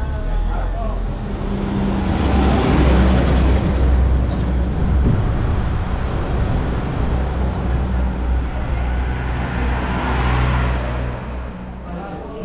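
Car and van engines running at low speed close by in street traffic, with a steady low hum and a swell of traffic noise that peaks about three seconds in and again near the end.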